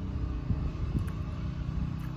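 Wind buffeting the microphone in an uneven low rumble over a steady low motor hum, with a couple of faint knocks.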